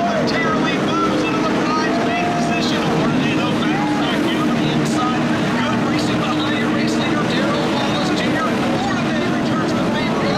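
A pack of NASCAR Camping World Truck Series V8 race trucks running laps on a dirt oval, a steady engine drone with no letup.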